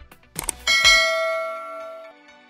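Subscribe-animation sound effects: two quick clicks, then a notification-bell ding about two-thirds of a second in that rings on and fades away.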